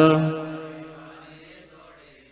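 A man's solo devotional chanting: the last syllable of a sung line held on one steady note, then fading out over about a second and a half.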